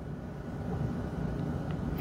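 A low, steady background rumble with no distinct events.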